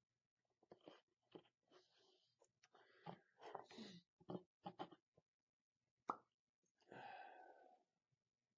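Faint handling noises: irregular small clicks, taps and rustles as a brush and a plastic miniature are handled and the model is set down on a tabletop, then one sharp tap and a short soft rush near the end.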